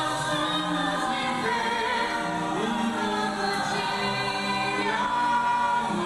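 Stage-musical cast singing together as a choir with musical accompaniment, in long held notes.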